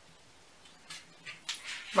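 A few short, soft scuffs and breaths from a person pulling off a shoe while balancing on one leg, growing louder near the end.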